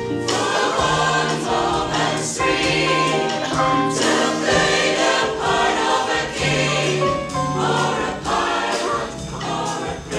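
A mixed choir of women and men singing in harmony, with held notes over a low part that steps from note to note.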